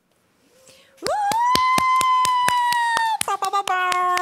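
Hand clapping, about six claps a second, starting about a second in, over a long high-pitched cheering 'woo' that glides up at its start; near the end the voice drops to a lower held note.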